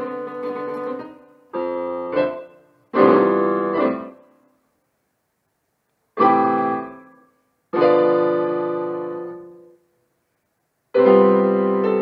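Electric piano keyboard played solo: struck chords and short phrases, each left to ring and die away. The playing twice stops into full silence for about a second before the next chord comes in.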